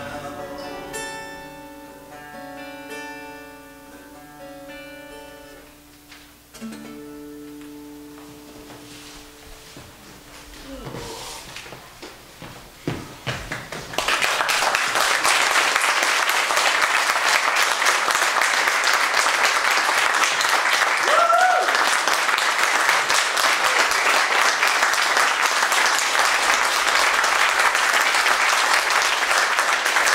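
Acoustic guitars play the closing notes of a song, which ring out and fade over about ten seconds. About fourteen seconds in, an audience breaks into loud, steady applause that carries on to the end.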